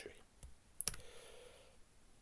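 A single sharp computer mouse click, about a second in.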